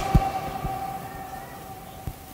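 Public-address loudspeakers ringing on and fading after a shouted chant: a steady ringing tone that slowly dies away, with two soft low thumps in the first second.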